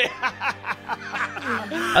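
Mocking laughter from several people, a rapid run of short snickering bursts, over a steady background music bed.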